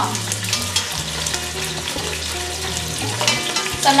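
Chicken pieces searing skin side down in a hot enameled pot, sizzling with steady crackling.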